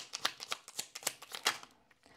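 A tarot deck being shuffled by hand: a quick run of soft card slaps and flicks, about six a second, stopping shortly before the end.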